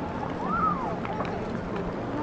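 Busy pedestrian-street ambience: passers-by talking, one voice rising and falling about half a second in, with footsteps on the stone paving.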